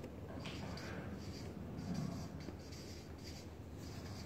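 Marker pen writing on a flip-chart pad: a run of short, faint scratching strokes, a few each second, with a faint low sound about halfway through.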